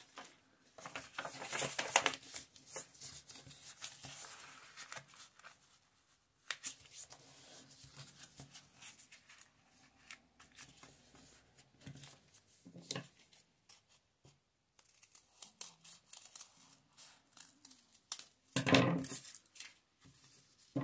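Paper handling: a thin old book page being folded and creased, with scissors snipping through the folded paper. The noise is irregular, with a louder stretch in the first few seconds and a short loud burst near the end.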